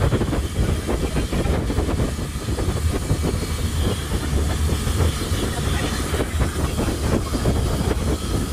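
Thai longtail boat under way: the engine's steady low drone, mixed with wind and rushing water.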